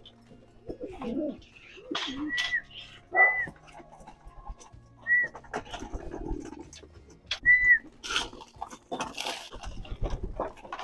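Pigeons in a loft: cooing, four short high squeaks scattered through, and wings flapping in the last couple of seconds.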